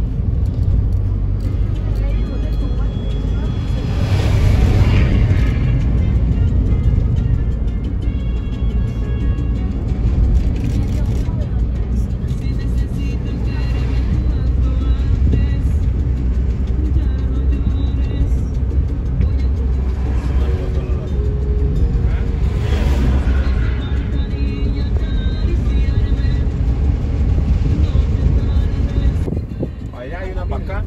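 Steady low engine and road rumble heard from inside the cabin of a moving passenger minibus, with music playing over it.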